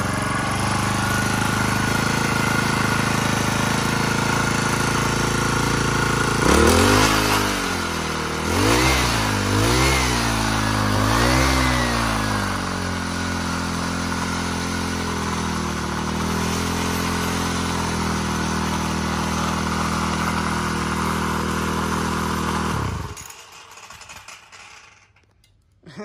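43cc four-stroke engine of a Makita EH043 brush cutter, not yet tuned, running: steady idle, then revved up and down about four times, back to a steady idle, and shut off about 23 seconds in.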